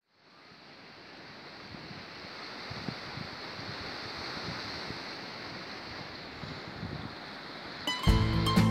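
Sea waves and wind, an even rushing noise that fades up from silence over the first couple of seconds and then holds steady.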